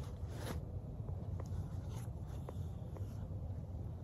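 Binoculars being put away into a fabric chest-harness case: a short rasp of the case's closure about half a second in, then a few small clicks and rubs of fabric and gear.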